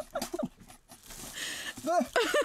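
A man gagging and breathing hard over a plastic-lined bucket while trying to swallow a mouthful of crickets: short throaty vocal sounds, then a breathy rush of air about a second in.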